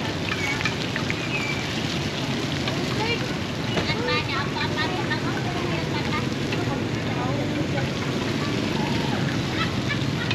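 Busy street ambience: a steady wash of traffic noise with indistinct voices chattering in the background.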